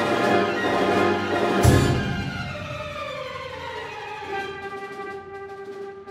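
Full symphony orchestra playing loudly. About a second and a half in, a crash of clash cymbals lands with a low drum stroke. The sound then dies away, leaving a single held note near the end.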